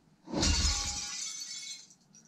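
A mirror smashing in a horror film's sound track: a sudden crash about a third of a second in, with a deep thud under it, then a bright shattering that runs about a second and a half before fading.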